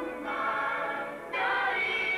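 A choir singing in held, sustained chords, with a louder new phrase coming in a little over a second in.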